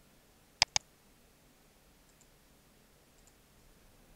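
Two quick, sharp clicks of a computer mouse button close together, like a double-click, about half a second in. Almost nothing else is heard apart from a couple of very faint ticks.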